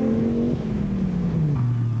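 Off-road racing car's engine running hard, its pitch falling about halfway through and settling lower, as when the car eases off or passes by.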